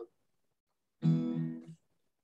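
An acoustic guitar chord strummed once about a second in, ringing for under a second as it fades before being cut short.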